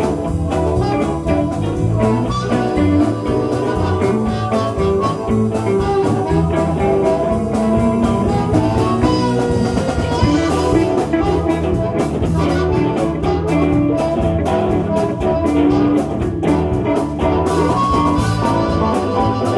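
Live electric blues band playing an instrumental passage: harmonica played into a vocal microphone over electric guitars, keyboard, bass and drum kit. Cymbals come in stronger about halfway through.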